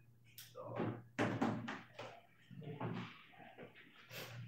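People talking quietly in a small room, in short broken phrases, with a sudden knock or bump a little over a second in.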